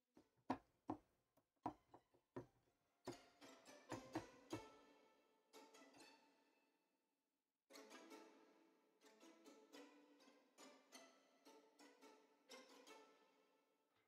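Sampled orchestral violins played quietly from a keyboard: a run of short, sharp col legno strikes about half a second apart, then denser clusters of short string notes with a reverb tail, a pause, and a second cluster.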